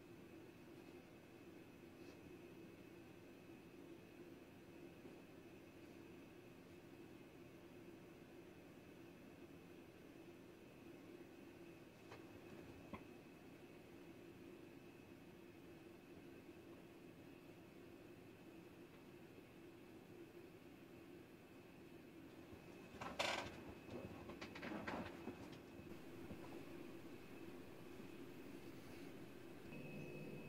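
Near silence: a faint steady low hum with a thin high whine, broken by a few brief knocks and rustles about twenty-three to twenty-five seconds in.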